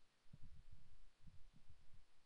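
Handling noise from a handheld camera being moved: a run of low, muffled bumps and rumble that starts about a third of a second in.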